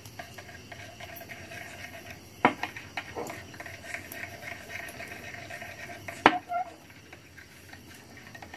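Metal spoon stirring in a small glass bowl, with a few sharp clinks of metal on glass, the loudest about six seconds in.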